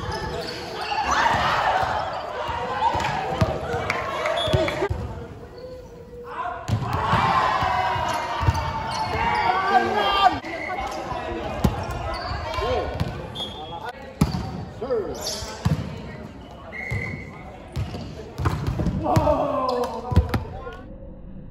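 Volleyball rally in a large sports hall: players shouting calls to each other, with repeated short thuds of the ball being struck.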